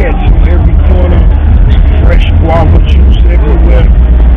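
A man talking over a loud, steady low rumble.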